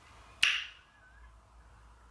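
A quiet room with one sharp click and a short hiss just under half a second in.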